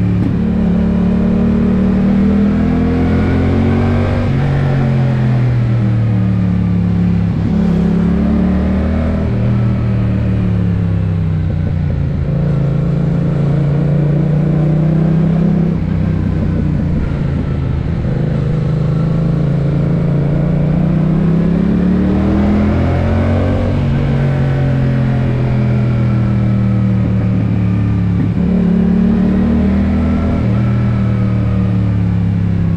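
Yamaha MT naked motorcycle's engine heard from the rider's seat, its revs rising and falling over and over as it accelerates out of bends and rolls off into the next.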